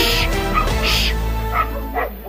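A dog barking, two sharp barks about a second apart, over background music.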